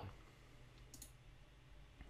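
Near silence with a single faint mouse click about halfway through.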